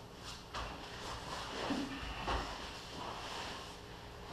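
Two grapplers' bodies and clothing shifting and rubbing on a padded training mat, with a few soft thumps, the loudest about halfway through.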